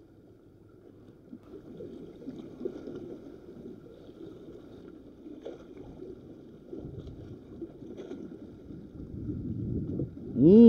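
Small seawater waves washing and lapping against shoreline rocks, a steady rough rush that swells toward the end, mixed with wind on the microphone.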